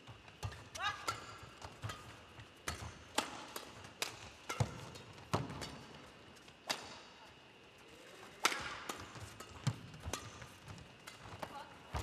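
A badminton rally: sharp cracks of rackets striking the shuttlecock at uneven gaps of half a second to a second and a half, with a louder pair of hits a little past the middle. There are a few brief squeaks of court shoes about a second in.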